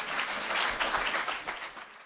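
Audience applauding, many claps blurring together, fading out near the end.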